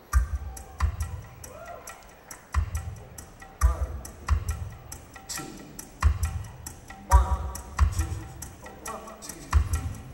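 Quiet opening of a live band song: deep low hits at uneven intervals, about one a second, each with a sharp click on top.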